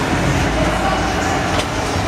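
Steady low rumble of an indoor Ferris wheel turning, heard from inside its steel gondola, with a faint click about one and a half seconds in.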